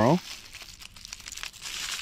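Plastic-wrapped candies crinkling and rustling as a hand stirs through a bucketful of them, growing louder toward the end.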